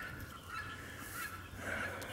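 A faint bird call, a fowl's call, about a second and a half in, over a quiet outdoor background.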